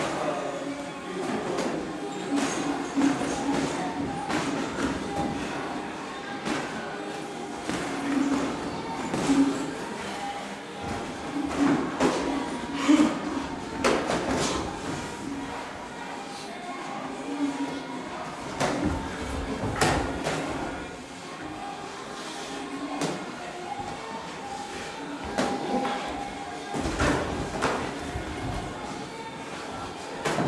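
Boxing sparring: irregular sharp thuds and slaps of gloved punches landing, over a background murmur of voices.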